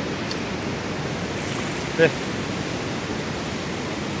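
Steady, even outdoor background noise with no distinct events, the kind heard on a river bank in light rain or wind; a man briefly says "eh" about two seconds in.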